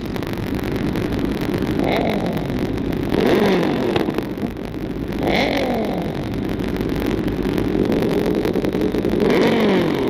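A sportbike engine revved hard at a standstill in four short blips. After each blip the pitch falls back toward idle.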